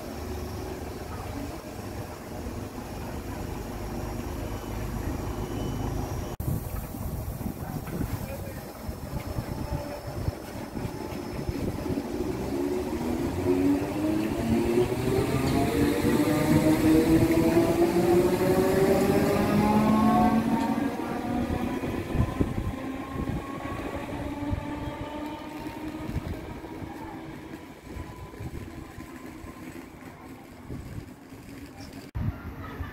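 Southern electric multiple unit, a Class 377 Electrostar, pulling away from the platform. Its traction motor whine rises steadily in pitch as it gathers speed, is loudest around the middle, then fades as the train runs off.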